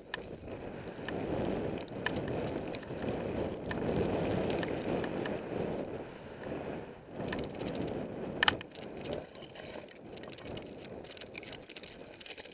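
Mountain bike descending a loose slate path: a rushing rumble of tyres over rock and air past the bike, broken by clicks and rattles. A sharp clatter comes about two-thirds of the way in.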